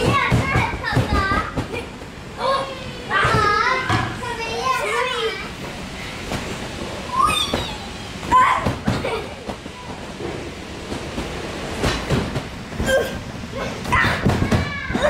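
Young children talking and calling out as they play, their high voices coming in several bursts with short lulls between.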